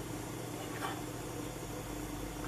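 Gas stove burner running under a pot of milk: a faint, steady hiss with a low hum.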